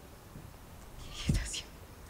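A short breathy whisper from a person about a second and a half in, against low background quiet.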